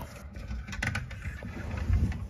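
Handling noise from a phone moved about at close quarters: an uneven low rumble with a few light clicks just before a second in, swelling near the end.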